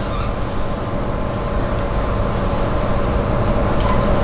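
Steady low rumble with a faint, even hum underneath: continuous room background noise, with no distinct events.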